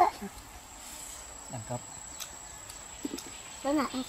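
Quiet outdoor background with a thin, steady, high-pitched insect drone. There is a brief low murmur about halfway through, and a voice starts up again near the end.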